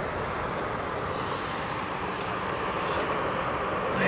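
Steady noise of road traffic on a nearby bridge, with a few faint light clicks.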